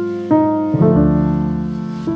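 Slow instrumental smooth jazz led by piano: chords struck about every half second, each ringing and fading, with a low bass note joining about a second in.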